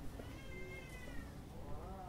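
Two faint, drawn-out animal calls, each rising then falling in pitch: a higher one early on, then a lower one near the end.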